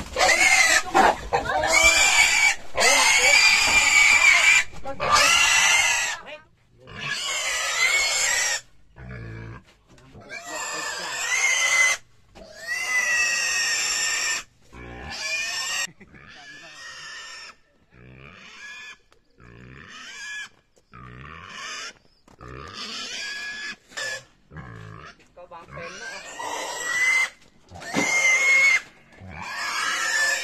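A domestic pig squealing in distress as it is caught and held by people, long loud squeals one after another with short breaks. The squeals are loudest for the first several seconds, then come weaker and shorter.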